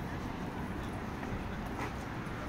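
Outdoor street ambience: a steady low rumble with a brief, short sound near the end.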